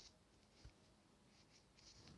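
Near silence: room tone with a few faint, brief scratches of a pen on paper, one near the start and one near the end, and a tiny knock a little after half a second.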